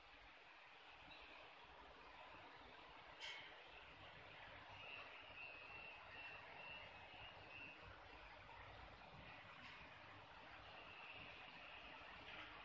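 Near silence: faint room hiss, with one soft click about three seconds in and a faint high tone for a few seconds in the middle and again near the end.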